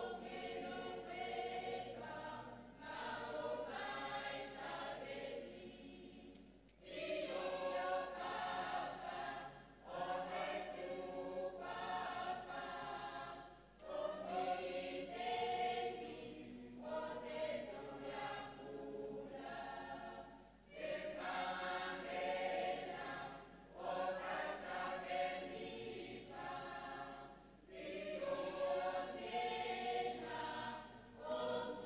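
A congregation of men and women singing a hymn together in several voices, phrase by phrase, with brief breaks for breath every few seconds.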